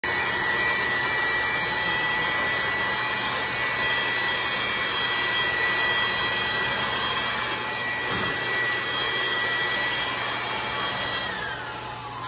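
An electric motor, such as a blower or rotisserie drive, running steadily with a high whine over a rushing noise. Near the end the whine falls in pitch and the sound gets quieter as it winds down.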